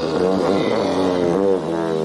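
Cartoon dinosaur roar for a long-necked dinosaur: a drawn-out pitched call that wavers up and down several times, over background music.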